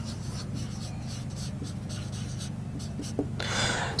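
Marker pen writing on a whiteboard, a quick run of short strokes, over a steady low hum. A short hiss comes near the end, after the writing stops.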